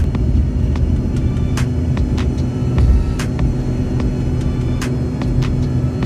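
Airliner cabin noise heard from a window seat just after takeoff: a loud, steady low rumble of engines and airflow, with a few faint clicks.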